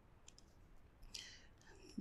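Near silence: room tone with a few faint clicks, a computer mouse clicking through an on-screen pen menu, and a soft hiss a little after a second in.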